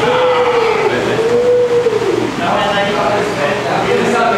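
A voice holding a long drawn-out vocal call for about two seconds, its pitch dipping once and rising again before falling away. Brief chatter follows.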